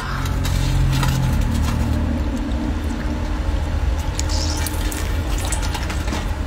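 Wet squelching and dripping as raw shellfish meat is squeezed and pulled apart by hand over a stainless-steel tray, liquid running off it into the tray, over a steady low hum.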